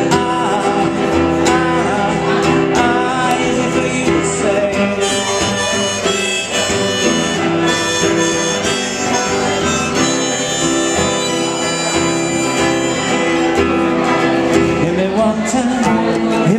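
Harmonica solo in long held notes over an acoustic guitar, the harmonica played from a neck rack.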